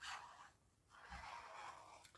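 Faint scraping of a liquid glue bottle's nib drawn across card as glue is run onto it, in two short stretches.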